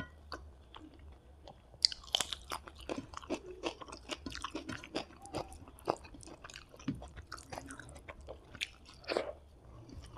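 Close-miked chewing and wet mouth sounds while eating rice and squid roast by hand, mixed with the soft squish of fingers working rice on the plate. A dense run of short sharp clicks, loudest about two seconds in.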